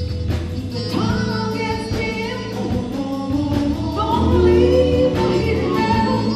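A live soul-blues band playing, with a woman singing over a steady bass line, drums and keyboards.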